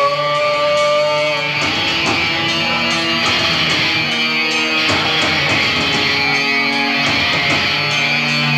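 Live metalcore band playing loud distorted electric guitars over drums. A held guitar note rings for about the first second and a half, then the band moves through changing chords about once a second.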